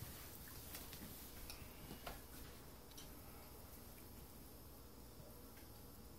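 Near silence: room tone, with a few faint clicks in the first couple of seconds.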